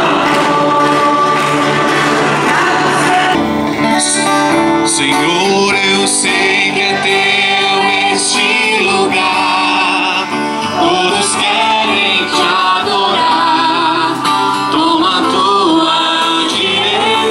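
Singing with music, a hymn sung by several voices. About three and a half seconds in, the sound cuts abruptly from a dense, full sound to a thinner one with a clearer single voice.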